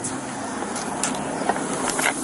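Street traffic noise picked up by a police body camera's microphone, a steady rushing hiss with a few brief clicks and rustles from the camera and gear moving.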